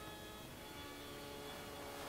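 Faint steady hiss with a low hum and a few thin, held tones underneath.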